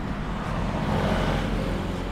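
A motor vehicle running nearby: a steady low engine hum under a hiss of road noise, a little louder in the middle.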